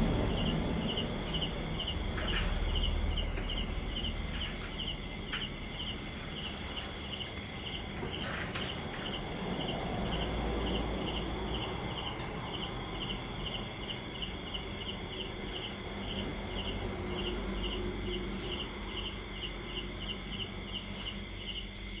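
Insects chirping in an even, regular pulse, about three chirps a second, that runs on without a break. Under it are low rustling and a few light knocks as a nylon hammock strap is wrapped around a wooden post.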